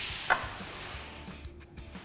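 Aluminium track-saw guide rail sliding across a plywood sheet: a scraping hiss that fades out over about a second.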